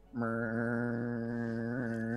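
A man's voice humming one long, steady low note, mimicking the hum of an old elevator running down the shaft.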